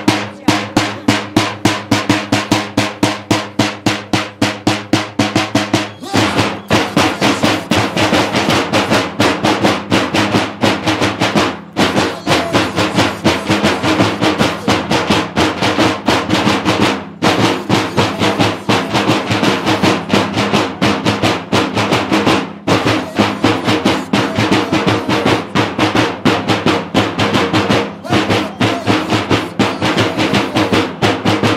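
Drums of a traditional Romanian bear-dance troupe beating a fast, continuous roll, with short breaks about every five to six seconds and a steady pitched tone underneath that shifts about six seconds in.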